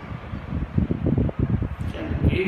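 Low, irregular rumbling of moving air buffeting a microphone, typical of a fan's draught hitting the mic.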